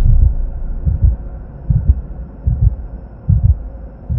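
Heartbeat sound effect: low double thumps, lub-dub, repeating about every 0.8 seconds, about five beats in all.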